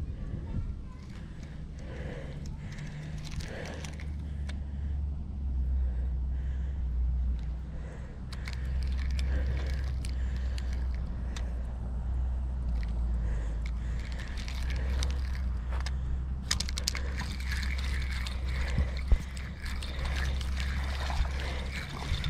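Steady low wind rumble on a body-worn action-camera microphone, with scattered light clicks and rattles from a spinning reel being cranked. A denser run of clicks comes in about two-thirds of the way through.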